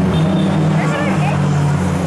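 A car engine running with a steady low drone as a car drives past.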